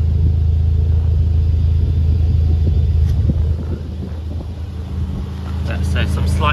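A car engine idling close by: a steady, even low hum, with a couple of faint knocks about three seconds in.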